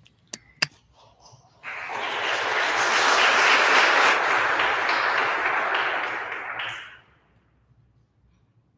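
Audience applauding for about five seconds, swelling and then dying away. Just before it come two sharp clicks of the microphone being handled.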